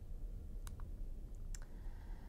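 A few faint clicks over a low room hum, a close pair about two-thirds of a second in and one more about a second and a half in: the buttons of a handheld presentation remote pressed to advance the slide.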